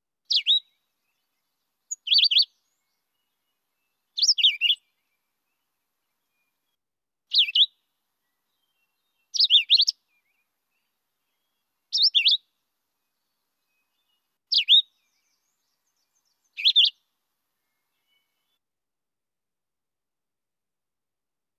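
A vireo singing: eight short, high whistled phrases that slide in pitch, each under half a second, spaced about two to three seconds apart.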